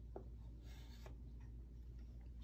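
Faint scratching of chalk on a chalkboard, with a light tap shortly after the start.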